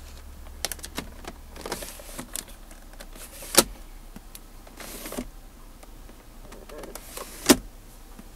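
Plastic sliding and clicking from a minivan's center-console roll-top cover being handled: two brief sliding rasps, and two sharp clicks, one about three and a half seconds in and one near the end, with light handling clicks between.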